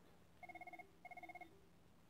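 A faint electronic ring: two short bursts of rapidly warbling tones, about half a second apart, like a telephone's trill.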